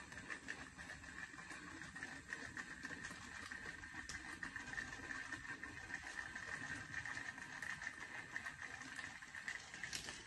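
Two battery-powered toy train engines running along plastic track, a faint, steady motor whine.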